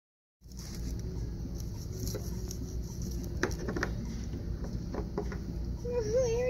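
Salt and pepper shakers shaken and set down on a wooden table over chips, a handful of light clicks and taps mostly in the second half, over a steady low restaurant room rumble.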